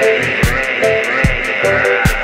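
Electronic reggae/dub groove played on a drum machine and synths: an Arturia DrumBrute Impact kick drum with a falling pitch sounds a little more than once a second, with hi-hat ticks. Short offbeat chord stabs fall between the kicks, over a held high synth line.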